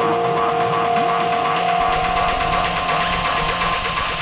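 Electronic dance music mixed live by a DJ: off-beat hi-hats about twice a second over held synth tones, with a deep bass line coming in about two seconds in.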